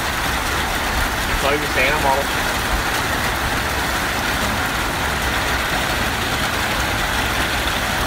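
Heavy rain pouring down in a steady, dense hiss, with a low rumble underneath. A voice is heard briefly about one and a half seconds in.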